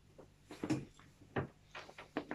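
Several short, irregular knocks and rustles of a person moving: getting up from leaning on a wooden bed footboard and stepping toward the bed.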